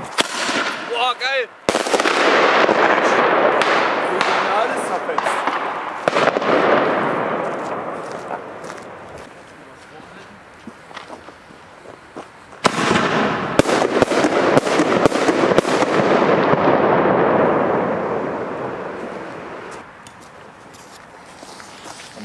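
Large firecrackers set off in a street. One bang about two seconds in leaves a long rumbling echo that fades over several seconds. A second loud blast near thirteen seconds, the ABA Hyper Cannon 5, brings a quick string of cracks and another long fading echo.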